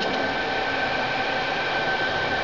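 Steady hum and hiss with several constant whining tones, like a machine or fan running.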